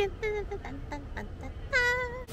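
A woman's high voice: a few short, falling vocal notes, then one louder, longer high-pitched squeal near the end.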